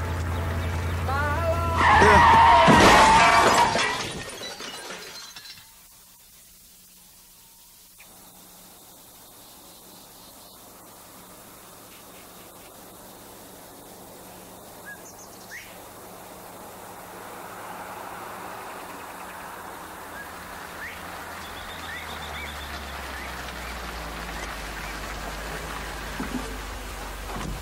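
A Chevrolet car crashing into the back of a stopped truck: a sudden loud smash of crunching metal and shattering glass about two seconds in, dying away over the next couple of seconds. Before it comes the low drone of the car running, and after it a quiet stretch with a faint hum and soft music slowly coming up.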